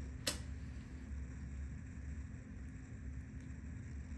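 A steady low room hum with one sharp click about a third of a second in.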